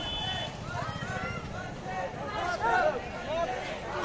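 A crowd of schoolchildren's voices, many calling out and shouting at once, overlapping throughout.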